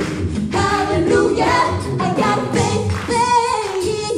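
Mixed-voice a cappella group singing live through microphones: several voices in harmony over a low sung bass part, with no instruments.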